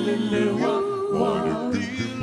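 Male a cappella doo-wop group singing live: a lead voice moving over held backing harmonies, with no instruments.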